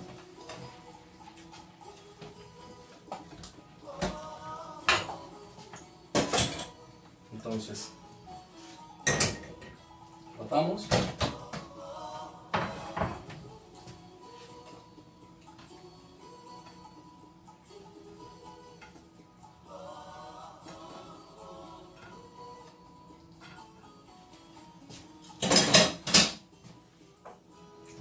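Background music, with intermittent clinks and clatters of a plate and kitchen utensils as food is set out on a plate; the loudest clatter comes near the end.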